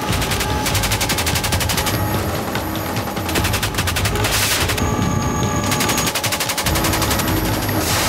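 Repeated bursts of rapid automatic gunfire, with music underneath.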